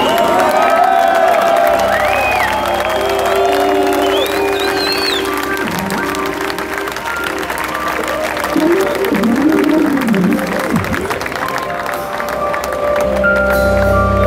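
A live band's intro of sustained keyboard chords over a low drone, with the audience applauding, whistling and cheering throughout. Deep low notes come in near the end.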